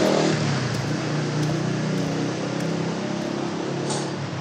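Steady city street traffic noise: the engines of passing cars and motorbikes running, with a constant hum and no single event standing out.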